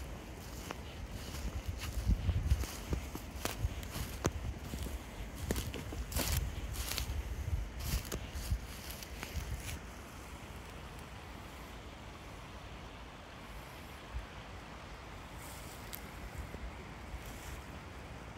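Footsteps crunching through dry fallen leaves, a dense run of crackling steps over a low rumble in the first half, thinning to a few soft steps in the second half.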